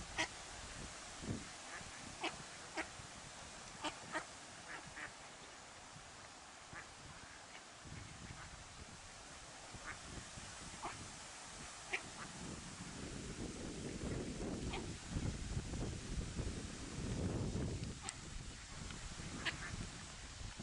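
Short, high calls from mallard ducklings and their mother, scattered irregularly. Low wind rumble on the microphone swells now and then.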